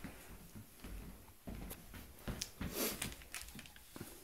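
Quiet footsteps on a wooden floor with scattered knocks and clicks of handling noise as the camera is carried.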